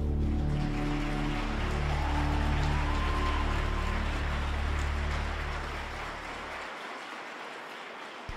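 Figure-skating program music ending on long held low notes that fade out near the end, while audience applause starts within the first second, builds, and carries on after the music has gone.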